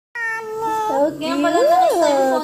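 A toddler's high-pitched, drawn-out whining vocal sounds, with a pitch that rises and then falls near the end.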